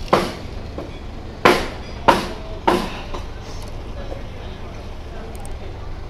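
Close-miked mouth noises of eating and sipping from a straw: four short, sharp bursts in the first three seconds, each dying away quickly, over a steady low background rumble.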